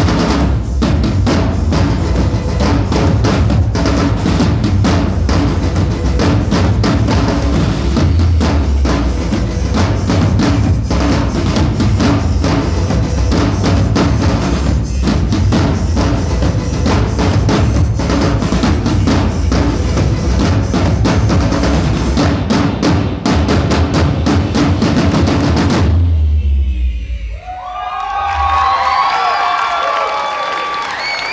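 Drum line playing rapid, dense patterns on marching snare drums over recorded music with a strong bass line. The routine stops about 26 seconds in, and the audience then cheers and claps.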